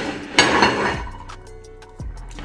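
A ceramic plate knocking and sliding on the tabletop: a sharp clink about half a second in, then a short scrape that fades. Background music plays underneath.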